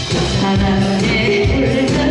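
A woman singing live into a handheld microphone over loud amplified backing music, played through a stage PA system; her voice comes in about a third of a second in.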